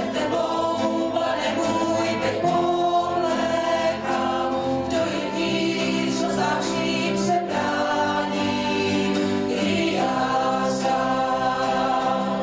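A mixed choir singing a Christian worship song in Czech, many voices holding sustained, steady chords.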